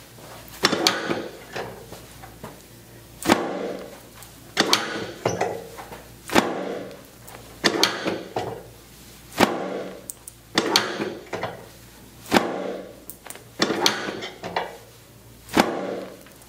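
A series of sharp knocks, roughly one every one to two seconds, each with a short ringing tail.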